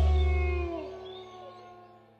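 A cartoon werewolf's howl, sliding down in pitch and trailing off, over the ringing final chord of the music, which fades away.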